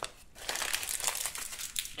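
Crinkling of a wrapper as trading cards are handled. The irregular crackle starts about a third of a second in and runs on.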